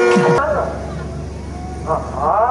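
Curved brass kombu horn sounding a long, low, lowing note. Ensemble music cuts off sharply just before it.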